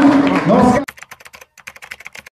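Loud hall noise of a cheering crowd with voices and music, cut off abruptly just under a second in. A quick, quiet run of keyboard-typing clicks follows, about ten a second, as a sound effect for text being typed onto the screen.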